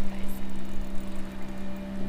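A steady low hum, with an irregular rumble of wind on the microphone.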